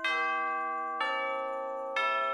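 Background music: a bell-toned instrumental with a new chord struck about once a second, each ringing on and slowly fading.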